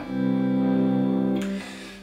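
Clean electric guitar, a Fender Stratocaster, strummed once through a C major chord across the strings. The chord rings out, its higher notes dying away about a second and a half in and the rest fading by the end.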